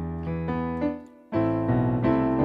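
Piano chords played on a digital keyboard in a quick passage. An E minor 7 chord over E sustains and changes, then fades to a brief gap about a second in, before new chords are struck in quick succession.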